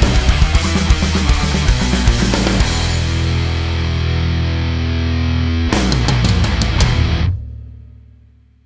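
Heavy metal band track: high-gain electric guitar through a Revv Generator MkIII amp, recorded on single speakers of a circa-2004 Mesa 4x12 cabinet with no EQ, over drums and bass; partway through it switches from speaker 4 to speaker 1 of the same cabinet, a change of tone between speakers of the same model. A fast pounding passage gives way about three seconds in to a held, ringing chord, then a short burst of hits and an abrupt stop about seven seconds in, the last chord dying away.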